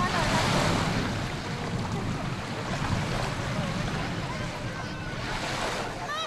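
Beach ambience: small sea waves washing ashore and wind on the microphone, a steady rush, with faint distant voices of bathers now and then.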